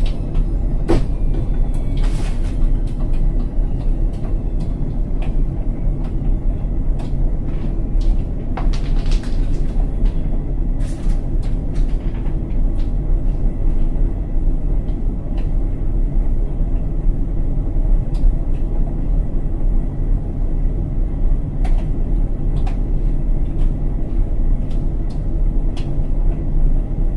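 Indesit front-loading washing machine with its drum turning during the rinse spin: a steady low rumble, with scattered clicks and knocks through the first half that fade out by about twelve seconds in.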